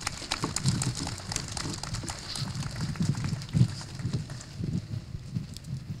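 Audience applauding: many scattered hand claps, with a low, uneven rumble underneath.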